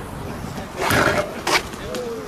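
BMX bike rolling on skatepark concrete with a steady rush of tyre and wind noise, and two sharp knocks about one and one and a half seconds in.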